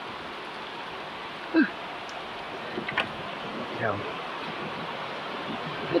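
Heavy rain falling steadily on the yard, a continuous even hiss.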